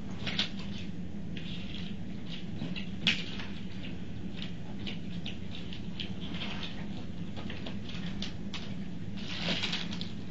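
Paper and packaging rustling and crinkling under gloved hands as forms and a DNA swab kit are handled on a table, with one sharp click about three seconds in. A steady low hum runs underneath.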